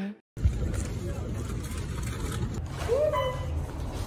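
Background music cuts off, then a low, steady rumble inside an elevator car, with a short vocal sound about three seconds in.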